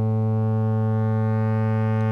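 A synthesizer holding one steady low note: a triangle wave hard-clipped by the Plankton Electronics NuTone distortion module until the whole wave is squared, giving a buzzy tone rich in harmonics.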